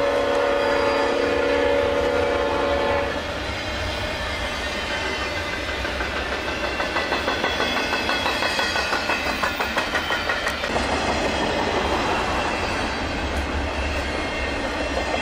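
Union Pacific freight locomotive horn held as a steady chord, cutting off about three seconds in. After that comes the rumble and rhythmic clickety-clack of double-stack container cars rolling past over the rails.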